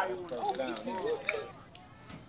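Indistinct voices of people talking near the microphone, dying away about a second and a half in.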